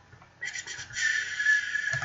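Synthesized bass patch built in Harmor with a band-pass sound, playing back from FL Studio: after a short silence a thin, high-pitched synth tone comes in with a few quick stutters, then holds steady.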